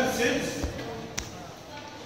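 A few words in a man's voice, then a dull thump and a sharp tap about half a second apart, footsteps of someone walking past close by.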